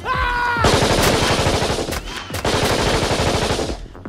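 A short held pitched sound, then a Kalashnikov-style assault rifle firing a long full-automatic burst of rapid shots for about three seconds, cutting off just before the end.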